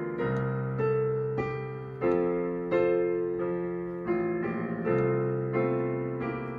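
Yamaha digital piano playing a slow hymn introduction in full chords, a new chord struck about every two-thirds of a second and left to ring over a low bass note.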